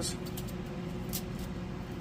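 A steady low hum from an appliance, with a couple of faint, short clicks as a knife tip pokes holes in a peeled garlic clove.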